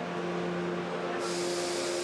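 Steady hum of rotational-moulding oven and hoist machinery, joined about a second in by a sudden steady high hiss.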